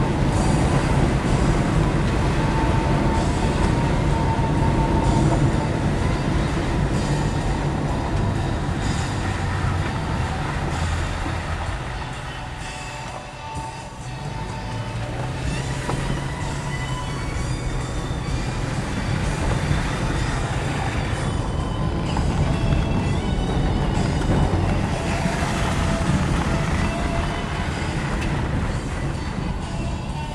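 Steady road noise of a car driving, heard from inside the cabin: tyres on a wet, partly snow-covered road with the engine underneath. It eases off briefly about halfway through, then picks up again.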